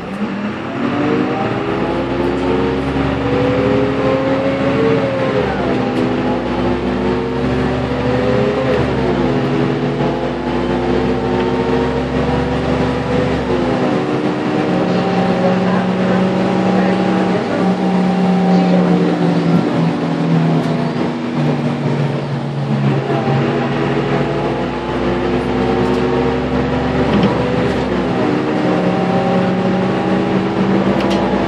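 Karosa B951E city bus's diesel engine, heard from inside the cabin at the front, pulling away. The engine note climbs and drops back three times as the bus shifts up through the gears, then runs at a steadier pitch while cruising, with a couple more dips and climbs near the end.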